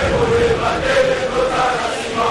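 A group of male voices chanting together in unison, holding a long note.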